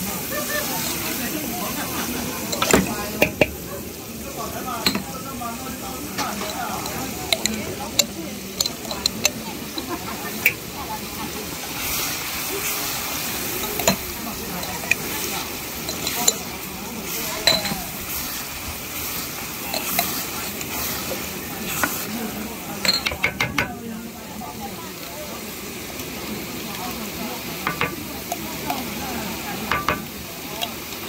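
Chili and shrimp-paste sauce sizzling in hot oil in a large wok while a wooden spatula stirs and scrapes it, with scattered sharp clicks and taps from the utensils against the pan, bunched in short runs.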